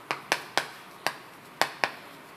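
A stick of chalk tapping and clicking against a chalkboard while handwriting is written. There are about six sharp, unevenly spaced taps.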